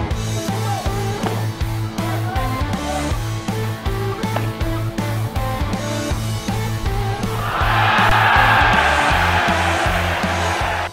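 Rock-style background music with electric guitar and a steady drum beat. For the last couple of seconds a loud rushing noise is laid over it.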